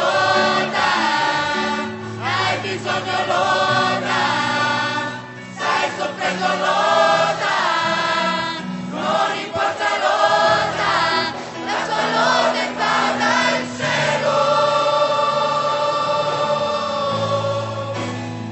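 Mixed youth choir of women and men singing a gospel song in parts, ending on a long held chord near the end.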